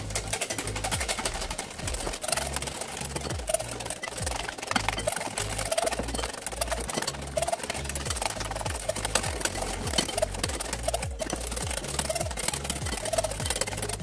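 Wire whisk beating eggs and sugar in a glass bowl, a fast, steady clicking and scraping of metal wires against glass as the mixture is whisked until pale, over background music with a steady bass line.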